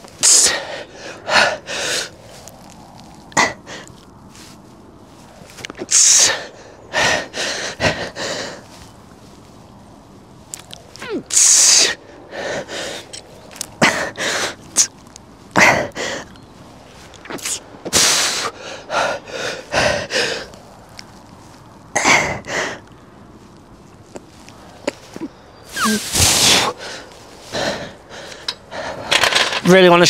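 A man breathing hard through a set of barbell Jefferson curls: short, sharp, hissy exhales and gasps, irregular, roughly one every second or two, with a quieter spell around ten seconds in.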